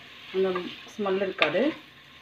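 Peeled field beans and vegetables frying in an open pressure cooker and being stirred with a spatula: a low, steady sizzle. Two short spoken phrases come over it, about a third of a second and a second in.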